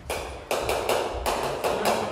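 Footsteps on a wooden hall floor: about eight sharp knocks in under two seconds, at an uneven pace.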